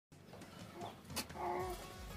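Faint, short bleat of a goat a little past the middle, with a soft click just before it.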